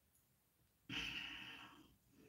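A woman's sigh: one breathy exhale, about a second long, starting suddenly about a second in and fading away.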